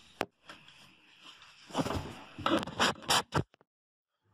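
Handling noise: a single click, then several short rubbing and scraping sounds in the second half, cutting off abruptly.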